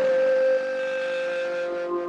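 A steady, sustained drone held at one pitch with overtones, dropping a little in level about half a second in; a second, lower tone joins near the end.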